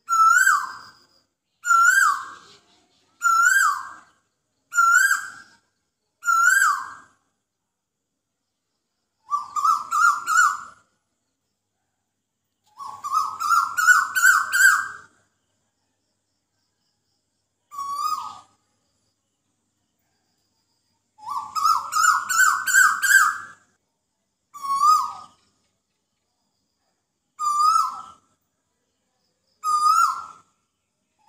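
A bird calling: single hooked whistled calls about every one and a half seconds, then fast runs of notes climbing slightly in pitch at about ten, fourteen and twenty-two seconds in, with shorter single calls between.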